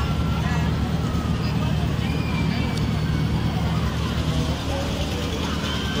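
Steady low background rumble with faint voices in the distance.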